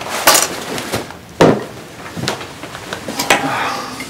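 A few sharp knocks and clatters of objects being handled and set down on a table, the loudest about a second and a half in.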